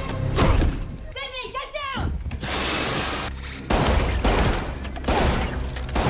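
Movie soundtrack of a violent fight scene: a run of sudden loud crashes and heavy hits, with a strained, wavering cry about a second in.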